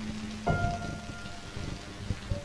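Live-coded electronic music: a dense crackling texture of low clicks with sparse ringing pitched notes, one struck about half a second in and fading slowly.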